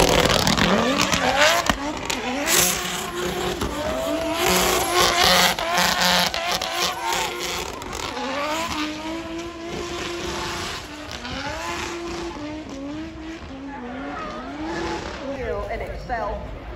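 Drift car sliding and spinning donuts, its engine revving up and down and its tyres squealing. It is loudest in the first half and fades over the last several seconds.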